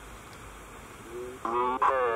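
An electronic voice from a ghost-hunting app on a tablet starts about a second in and utters words rendered as "Sie hören kann".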